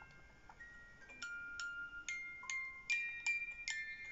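Pull-string musical cot toy's music box playing a tinkling tune: single plucked notes that ring on, about two a second, a little sparser in the first second.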